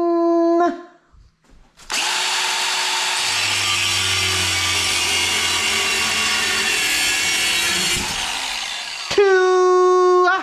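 Angle grinder fitted with a cutting disc, cutting through a metal bar held in a vise. A brief free-running whine stops in the first second. After a short pause comes about seven seconds of steady abrasive cutting. Near the end the disc whines freely again for about a second before shutting off.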